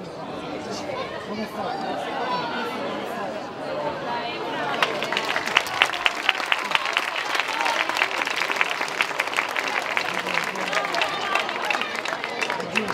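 A crowd's voices and calls, then clapping that joins in about five seconds in and goes on as dense applause. It is the audience's applause for one contestant, being scored by an applause meter.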